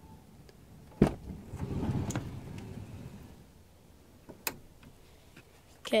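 A car door latch clicks sharply about a second in, followed by a low rumbling scrape of the phone being handled against the car, and a smaller click a few seconds later.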